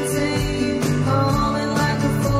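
Live band playing a country-folk song: acoustic guitar, electric guitar, electric bass and drums, with a steady beat.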